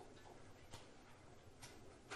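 Near silence: quiet room tone with two faint clicks, under a second apart.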